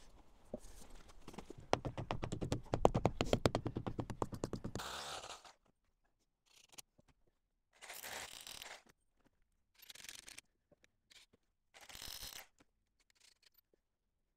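Power drill boring into concrete blockwork in short bursts of about a second, with silent gaps between them. Before the bursts come a few seconds of rapid, evenly spaced clicking.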